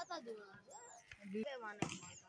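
Players shouting and calling out during a volleyball rally, with one sharp smack of a hand on the ball near the end.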